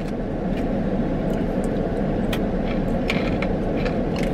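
Steady low rumble of a parked car running, heard from inside the cabin, with a few faint crunches of coated peas being chewed.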